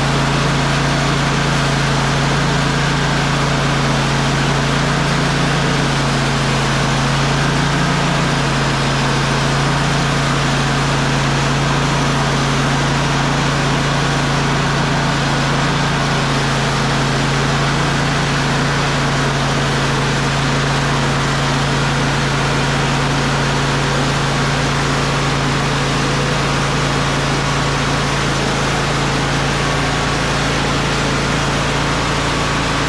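Portable band sawmill's engine running steadily under load as the band blade cuts a board from a dark cherry log.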